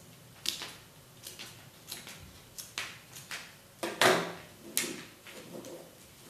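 Scissors making a series of short, sharp snips into the curved edges of a masking-tape pattern on paper: relief cuts that let the tape lie flat. About four seconds in comes a louder clack, likely the scissors set down on the table, then softer rustling as the tape is pressed down.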